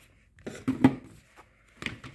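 Handling noise from a diamond-painting stylus being picked up and repositioned: a few light knocks and clicks, the sharpest a little under a second in and another near the end.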